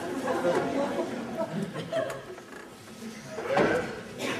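Quiet, murmured talk with some light chuckling; a voice grows louder near the end.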